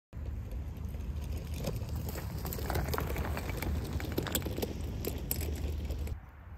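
Wind buffeting the microphone in a steady low rumble, with irregular dry crackling and rustling of dry grass stalks over it.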